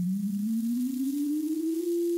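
A single sine-wave tone from a loudspeaker driven by a function generator, with a Chladni plate resting on it, rising in pitch and then holding steady near the end at 343 Hz, a frequency that sets up a standing-wave pattern in the sand on the plate.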